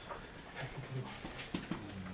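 A low, muffled voice talking quietly, with a couple of sharp clicks near the end.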